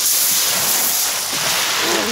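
Small waves washing up a pebble beach: a steady hiss of surf over the stones, easing off slightly near the end.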